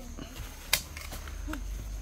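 Metal shovels scraping into sand and earth, with one sharp clink about three quarters of a second in and a few softer knocks after it.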